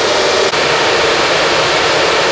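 Steady rushing of the cooling fans of many Bitmain S19-series ASIC bitcoin miners running together, with a brief dip about half a second in.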